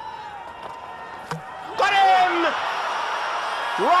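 Cricket ground crowd noise, then a single sharp knock of the ball hitting the stumps, and a second later the crowd erupts in cheers while players shout in celebration of the wicket.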